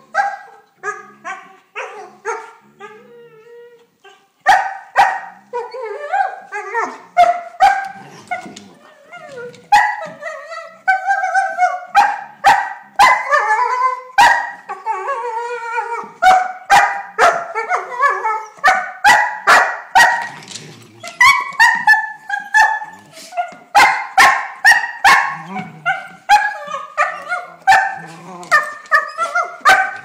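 Irish setter puppy "singing" to an older dog: whining, yipping and barking. The calls slide up and down in pitch, with short sharp yips mixed in. They are sparse at first and run almost without a break from about four seconds in.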